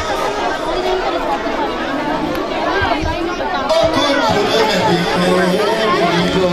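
Many voices of a procession crowd talking and calling at once. From about four seconds in, a voice holding long, wavering chanted notes rises above the babble.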